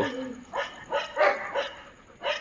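Dogs barking, about four short barks spaced through the two seconds.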